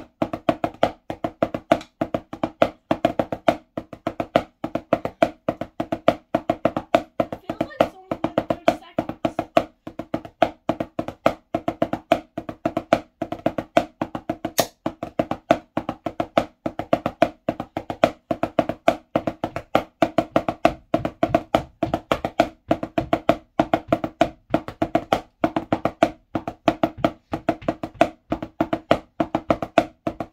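Wooden drumsticks playing five-stroke rolls on a drum practice pad: a steady, unbroken stream of quick, sharp stick strikes repeated in even groups.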